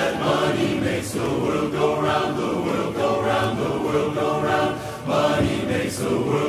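Large men's barbershop chorus singing a cappella in close harmony.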